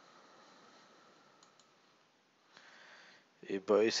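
Two faint computer-mouse clicks in quick succession about a second and a half in, against quiet room tone, followed by a breath and a man starting to speak near the end.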